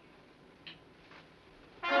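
A nearly quiet pause, then near the end a loud orchestral brass chord of trumpets and trombones comes in suddenly and is held: a dramatic music sting in a 1960s TV score.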